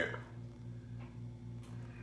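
Quiet kitchen room tone: a steady low electrical hum, with a couple of faint ticks about one second and one and a half seconds in.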